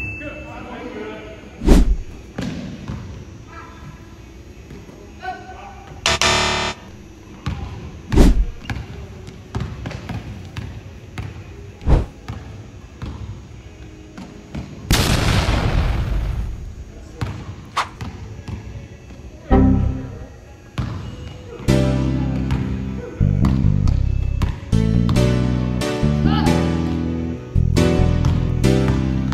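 Basketball bouncing and hitting the hardwood gym court, with several sharp loud thuds, and a brief rush of noise about halfway through. Background music with guitar comes in near the end.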